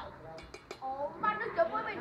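Tableware at a shared floor meal, chopsticks against bowls and plates, clinking lightly three times about half a second in, under background chatter.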